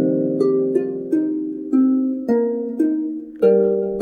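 Star Trek Vulcan Harp iPad app sounding harp-like plucked notes: an earlier strum rings out, then about seven single notes are plucked one at a time, each ringing and fading.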